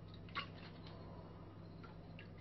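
A light click about half a second in, then a few faint ticks, as a plastic water bottle and its cap are handled, over a low steady hum.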